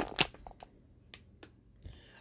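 Packaging crackles as a licorice bag is handled: two sharp crackles right at the start, then a few faint scattered clicks.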